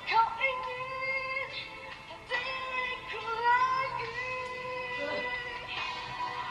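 A woman singing a slow ballad live with band accompaniment, holding long notes of about a second each, several sliding up into pitch.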